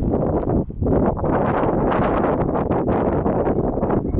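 Wind blowing across the camera's microphone: a loud, uneven rush of noise that surges and eases, with a brief lull a little under a second in.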